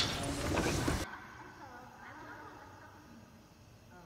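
A loud rushing noise that cuts off abruptly about a second in, leaving a much quieter stretch with faint traces of a voice.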